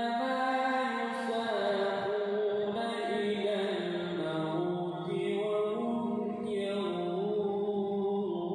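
A single male voice chanting an Islamic recitation in long, held notes that waver and turn melodically, heard through the mosque hall.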